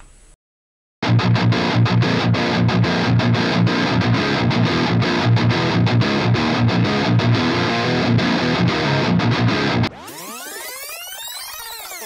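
Low-tuned distorted electric guitar playing a fast rhythm riff of rapid chugs. It is a DI track reamped through a Victory The Kraken 6L6 valve amp on its crunch channel, boosted by a BB Preamp and taken through a Torpedo Captor load box. It starts about a second in after a brief silence and stops near the end, where a sweeping transition effect rises and falls.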